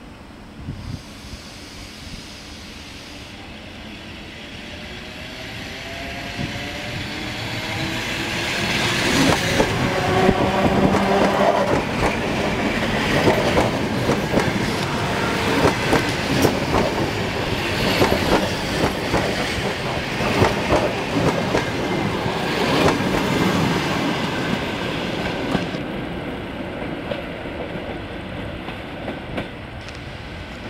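Electric multiple-unit commuter train approaching and passing close by a platform. A rising whine and a growing rumble come as it nears, then a long run of wheel clicks over the rail joints. The clicks fade off toward the end.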